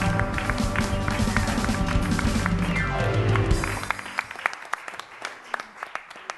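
A worship band with acoustic guitar and voices plays the end of a gospel hymn and stops a little over halfway through, just after a falling run of notes. Scattered hand claps follow.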